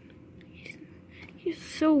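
Quiet room noise with a short knock about one and a half seconds in, then a person whispering and speaking the word "so" near the end.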